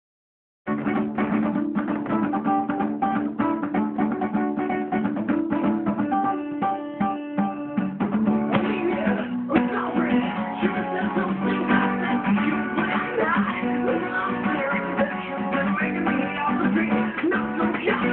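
Acoustic guitar strummed solo, starting just under a second in; a man's singing voice joins about halfway through.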